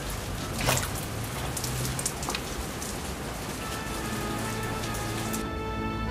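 Heavy rain pouring down onto wet pavement, with a few sharper splashes early on. Soft music comes in about halfway, and the rain cuts off suddenly near the end.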